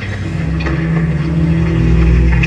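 A low, steady drone of several held tones that swells in loudness.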